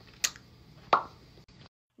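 Two short mouth pops about two-thirds of a second apart over faint room tone; the sound cuts out completely near the end.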